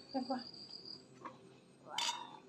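A cricket's steady high-pitched trill, which stops about halfway through. Near the end a ladle clinks against a metal bowl.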